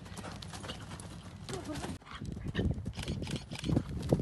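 Hoofbeats of a grey Connemara x Welsh pony cantering on a loose arena surface, an irregular run of dull strikes that grows louder in the second half as the pony comes into a show jump.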